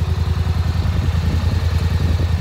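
Polaris Sportsman 850 XP ATV's twin-cylinder engine idling steadily.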